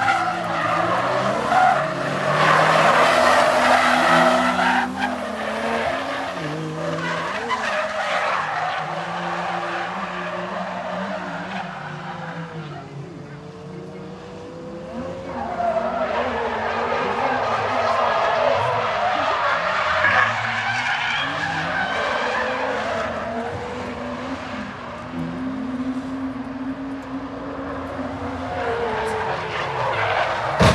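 Two drift cars sliding through the corners, their engines revving up and down under loud tyre skidding and squeal. The noise is loudest for a few seconds near the start, eases off around the middle, and builds again on the next pass.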